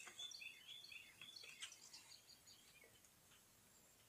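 Faint birds chirping in short high calls, mostly in the first half, over near-silent outdoor background.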